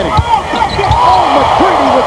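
Sounds from the hardwood court during live play: a basketball being dribbled and sneakers squeaking in short gliding chirps, over a steady crowd murmur that grows in the second half.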